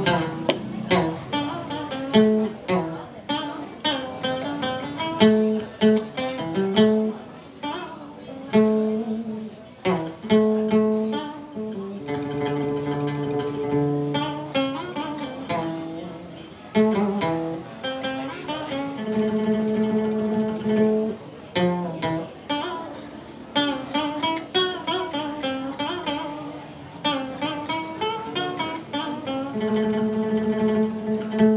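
Đàn kìm (Vietnamese moon lute) played in an improvised melody: quick runs of plucked notes, with a few longer held notes around the middle.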